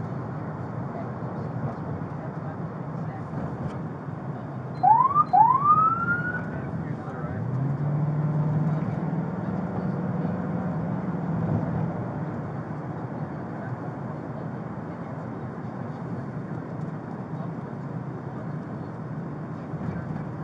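Two short rising police siren whoops about five seconds in, heard from inside a patrol car over its steady engine and road noise. A few seconds later the engine note rises and holds as the car speeds up.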